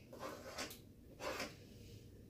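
Faint scraping as chopped chipotle peppers are pushed off a cutting board into a bowl, a few short rasps in the first second and one more shortly after.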